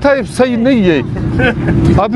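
A man talking, then about a second in a low, steady rumble of a motor vehicle comes up under fainter voices.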